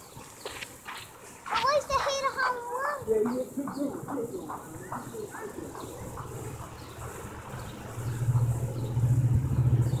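People's voices, followed by the low, steady hum of an engine that comes in about six seconds in and grows louder near the end.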